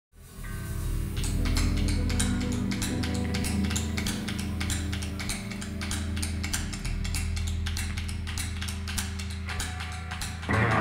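Blues-rock band opening a live song: a sustained low keyboard chord with steady ticking percussion over it. It fades in from silence at the very start.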